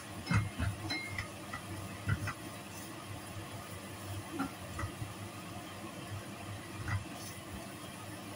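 Steady light sizzle of sliced aromatics frying in a nonstick pan, with the wooden spatula knocking and scraping against the pan every second or two as they are stirred.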